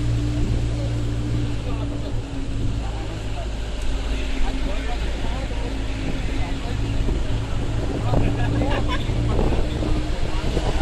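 Engine and road noise heard from inside a moving vehicle: a steady low drone with a faint hum running through it.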